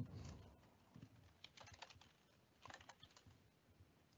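Faint computer keyboard typing: two short runs of soft key clicks, about a second and a half in and again near three seconds, as a short word is typed.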